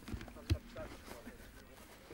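Faint background voices, with one sharp knock about half a second in.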